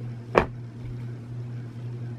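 One sharp click or knock about a third of a second in, over a steady low hum.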